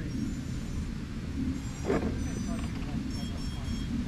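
Steady low outdoor rumble with faint, distant voices, one of them briefly louder about halfway through. Thin high-pitched tones come and go twice in the second half.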